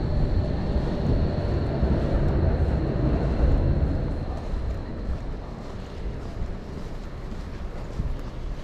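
City street ambience: a low rumble of traffic with wind buffeting the microphone, louder for the first half and easing off after about four seconds, with a faint high tone fading out around the same time.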